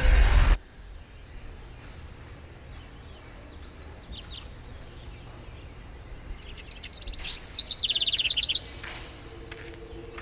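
Birds singing: a few faint high chirps, then a loud, rapid, high-pitched trilling song lasting about two seconds near the end. It opens with a low hum that cuts off abruptly about half a second in.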